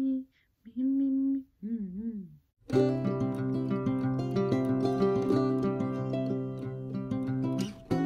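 A woman hums a few short notes, wavering on the last. About two and a half seconds in, background music with plucked acoustic strings starts suddenly and carries on.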